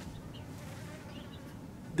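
Faint outdoor background in a pause between words: a steady low hiss with a faint insect buzz.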